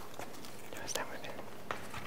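Hushed room tone with faint whispering and a few small clicks and rustles, the sharpest click coming late in the moment.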